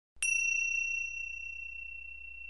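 A single high bell-like chime struck once about a quarter second in. Its clear tone rings on and slowly fades.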